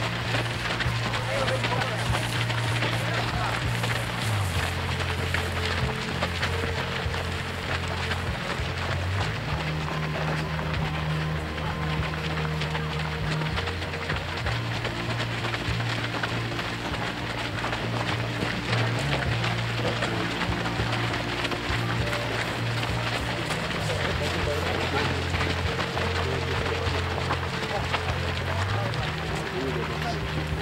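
Many runners passing on a gravel path: a dense patter of footsteps with voices mixed in, under music of long, low held notes that change pitch every few seconds.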